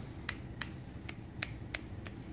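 Shimano 105 ST-5500 STI shifter/brake lever mechanism clicking as the lever is worked by hand: about four sharp, unevenly spaced clicks. The newly fitted lever is being checked to see that it returns freely.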